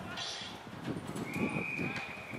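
A whistle blown once from a little past halfway, a single steady shrill tone lasting about a second, over players' shouts and the thud of running feet on turf.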